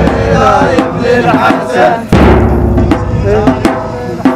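Latmiyya mourning chant: deep, heavy bass drum strikes, one about two seconds in, under a chanted vocal melody with sharper percussive hits between them.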